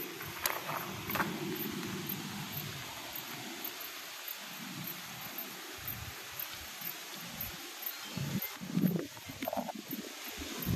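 Wind buffeting on the microphone, an uneven low rumble that swells and fades, with a few sharp clicks about half a second and a second in and a louder gust near the end.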